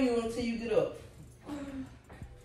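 A person's voice: a drawn-out sound with no clear words through the first part, then a short second one near the end.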